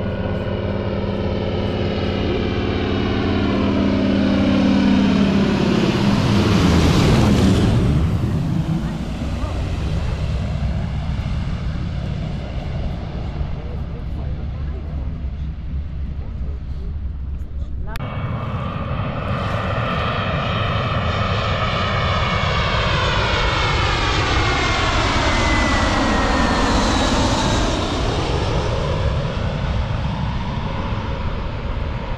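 Airliners flying low on approach to land, engines running, in two passes. The first swells to loudest about seven seconds in and fades; after a sudden change a second one approaches with a high whine that falls in pitch as it passes, loudest near the end.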